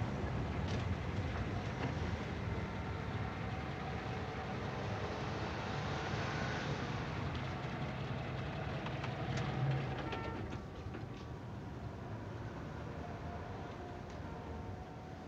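Steady low vehicle rumble, like a car or passing traffic, with a few faint clicks. It eases down a little about ten and a half seconds in.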